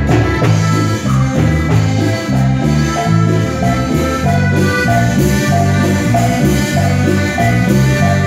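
Live Latin band playing dance music: congas and drum kit over a steady bass line that changes note in a regular rhythm.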